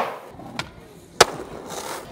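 Skateboard wheels rolling on hard ground. There is a loud clack of the board right at the start, and another just after a second in.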